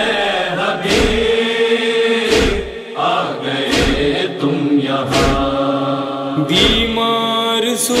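A chorus of male voices sings a long, drawn-out chant as the backing of a Muharram noha. A deep thump falls about every second and a half, six in all, keeping the slow lament beat.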